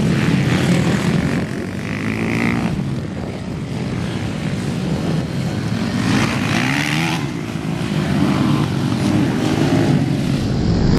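Several small dirt-bike engines buzzing on a motocross track, revving up and down as the bikes ride, with rising and falling revs at about two seconds and again at about six to seven seconds.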